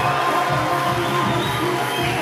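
Music playing loudly over a cheering crowd at the close of a speech.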